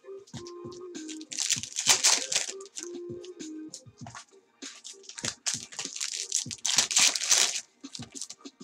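Foil trading-card pack wrappers crinkling and tearing as packs are handled and opened, loudest in two bursts about two seconds in and about seven seconds in, over quiet background music.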